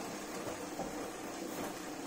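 Steady, faint whir of a road bike being ridden on a Saris H3 direct-drive smart trainer, with no distinct strokes or rhythm.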